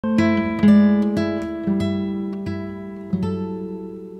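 Background music on plucked acoustic guitar: a short run of single notes and chords, the last chord left ringing and slowly fading.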